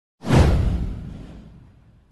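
A whoosh sound effect from an intro animation, with a deep low end: it swells in sharply about a quarter of a second in, then fades away over about a second and a half.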